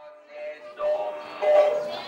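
A high voice drawing out a long, chanted note in stylized kabuki delivery, typical of a child kabuki actor, fading in at the start and swelling louder about a second in.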